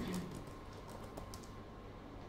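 Typing on a laptop keyboard: a quick run of soft key clicks in the first second and a half, then only faint room noise.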